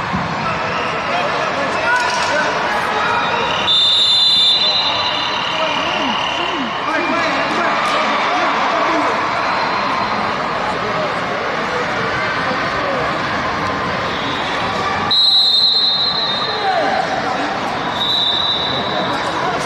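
Referee's whistle blown twice, a high steady blast lasting under a second, about four seconds in and again near the end, over a continuous murmur of voices in a large hall.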